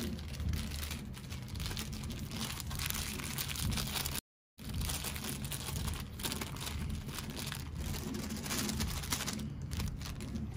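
Thin clear plastic bag crinkling and rustling as fingers work it open, with irregular crackles throughout. The sound cuts out completely for a moment a little after four seconds in.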